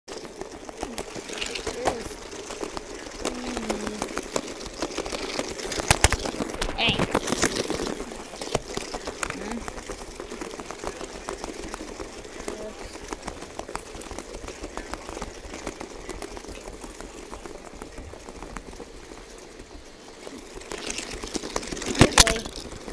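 Battery-powered spiky toy balls running, their motors making them buzz and rattle against the carpet in a rapid, irregular clatter of small clicks. There is a louder knock about six seconds in.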